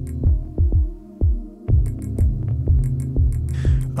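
Electronic background music played on Yamaha FM synth patches: a sustained low drone with repeated thudding, pitch-dropping beats. The bass drops out briefly a little after a second in.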